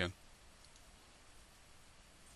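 Two faint computer-mouse clicks a little over half a second in, otherwise near silence: room tone.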